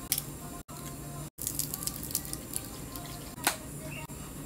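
Plastic drink bottle and lidded plastic cup being handled: a run of small clicks and crackles, then one sharper snap near the end. The sound cuts out twice briefly early on.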